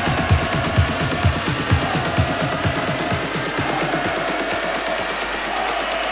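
Electronic dance music played by a DJ through a club sound system: a steady four-on-the-floor kick drum, about two beats a second, under synth lines and fast hi-hats. The kick and bass drop out about halfway through, leaving the higher synths and hi-hats.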